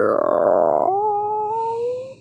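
A person's wordless vocal sound, the voice given to the negative-zero character: a drawn-out voiced sound that about a second in turns into a thin, howl-like held note, rising slowly in pitch.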